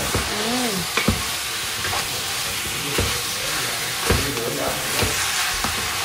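Food frying in a pot on the stove, a steady sizzle, with a spatula stirring and a few knocks of the utensil against the pot.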